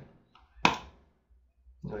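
A single sharp click from a computer mouse button, a bit over half a second in, louder than the surrounding speech.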